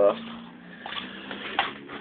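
Faint wet handling sounds of fingers wiping blood off a raw northern pike fillet on a cutting board, with a brief tap about one and a half seconds in.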